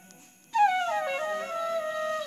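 Background music on flute: after a brief hush, a new flute phrase enters about half a second in and steps downward in pitch.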